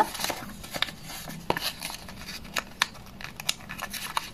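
Small handmade paper envelope being unfolded by hand, the paper crinkling with scattered light crackles.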